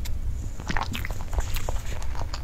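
Close-miked mouth sounds of eating and drinking soft cream cake: scattered wet clicks and smacks, with a steady low hum underneath.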